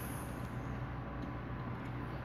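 Quiet room tone: a steady low hum with faint background hiss.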